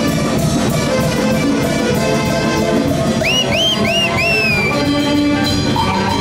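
Live dance band music with wind and brass instruments over a steady, regular beat. About three seconds in there is a run of four short, high swooping notes.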